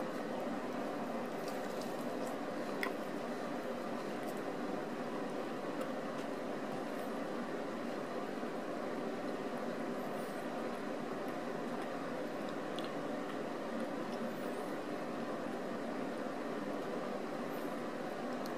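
A steady, even background noise with a person faintly chewing a large mouthful of bacon cheeseburger, and a few soft clicks.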